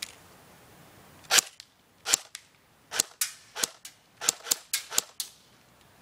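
Airsoft AK-47 fired on semi-auto: about a dozen separate sharp shots at an uneven pace, a few a second, starting about a second in and stopping shortly before the end.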